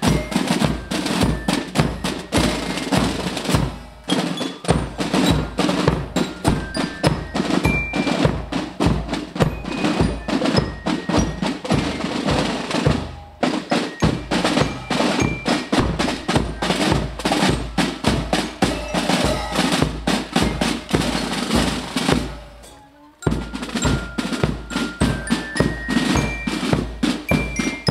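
Scout marching band drum corps playing a steady marching beat on snare drums with regular bass-drum thuds, a high bell-like melody over it. The playing drops out briefly three times, between phrases.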